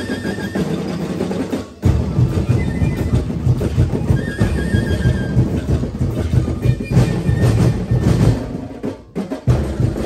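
Dinagyang tribal drum and percussion ensemble playing a fast, driving beat, with two brief breaks, one early on and one near the end.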